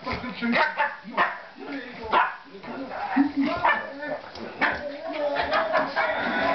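Two dogs playing, with short, irregular barks and yips.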